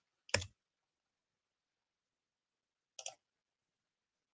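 Computer mouse clicks: one sharp click about a third of a second in, then a quick double click about three seconds in.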